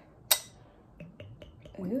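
A single sharp glass clink, then four light ticks, from a wine glass being handled for a taste of red wine.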